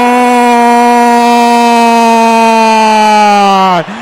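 A football commentator's long drawn-out "gol" shout, one unbroken call held at a steady high pitch that sags slightly and drops off just before the end. It is the stretched goal call announcing a goal just scored.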